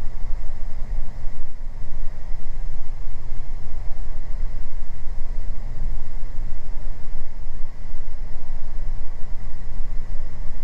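Steady drone of a Beechcraft G58 Baron's twin six-cylinder piston engines and propellers heard inside the cockpit, at reduced power on the approach. A faint steady high tone runs beneath it.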